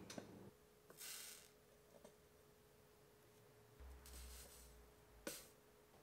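Near silence: quiet room tone with a faint steady hum, two brief soft hisses and a small click near the end.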